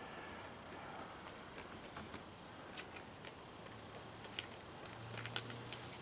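Faint, irregular small clicks of a raccoon chewing its food close up, with a faint low hum coming in near the end.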